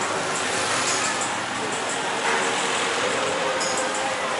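Motor scooters riding past on a busy street, over a steady din of traffic with voices in the background.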